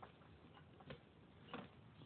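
A few faint clicks, roughly three over two seconds, from a Baja Designs metal passenger footpeg being wiggled by hand: the right peg is loose in its mount.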